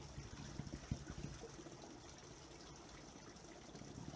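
Spring water being scooped into a plastic bottle: a few soft gurgles and knocks in the first second and a half, then a faint steady trickle of running water.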